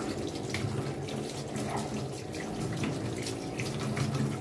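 Tap water running over a metal pan and splashing into a stainless-steel sink as the cleaning paste is rinsed off, with small splashes and clinks throughout.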